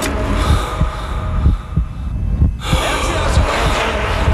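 Dramatic commercial soundtrack: music over a low, repeated pounding beat, with hard breathing.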